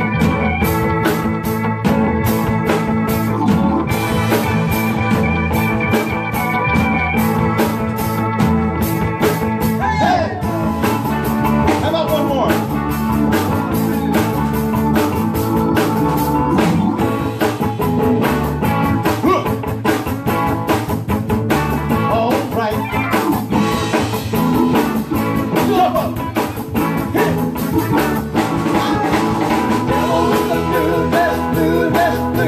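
Live rock band playing in full: electric guitars, drum kit, bass and keyboards.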